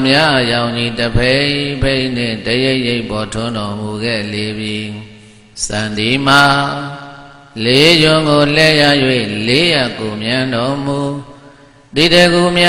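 A Buddhist monk's single voice chanting in a sustained, melodic recitation, held in long phrases with short pauses for breath about five seconds in, again around seven and a half seconds, and near the end.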